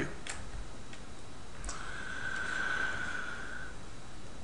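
A few soft clicks of a computer mouse over faint background hiss. A faint steady high tone starts at a click about one and a half seconds in and stops about two seconds later.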